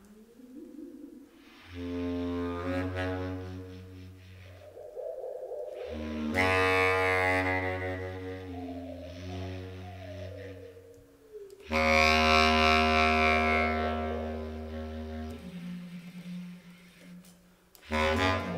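Bass clarinet played in long phrases: deep sustained notes held for several seconds and broken by short pauses, with higher wavering and gliding tones layered over them.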